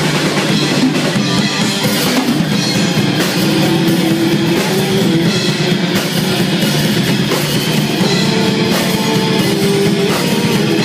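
A heavy metal band playing live: distorted guitars over a drum kit, loud and dense without a break.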